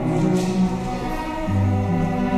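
String orchestra playing, with the cellos bowing sustained notes; a stronger low note comes in about one and a half seconds in.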